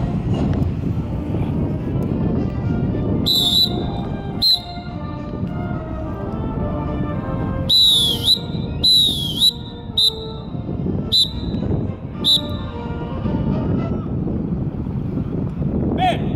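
Band music playing, cut through by about seven shrill blasts of a drum major's whistle: two short ones about three and four seconds in, then a run of five between eight and twelve seconds, the longer ones warbling and dipping in pitch.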